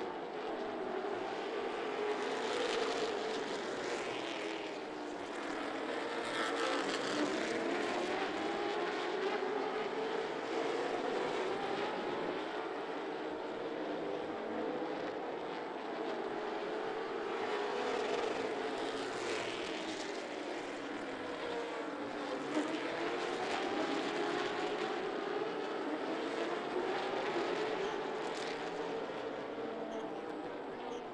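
Several late model stock car V8 engines racing around a short oval track, their pitch rising and falling over and over as the cars lift into the turns and accelerate down the straights. The sound stays at a steady loudness throughout.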